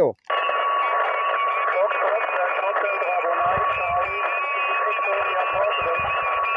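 Shortwave SSB receiver audio from the FT-817 transceiver's speaker, cutting in suddenly just after the operator releases the push-to-talk: thin, narrow-band voices of stations calling over hiss, with a steady whistle of a heterodyning carrier running through it.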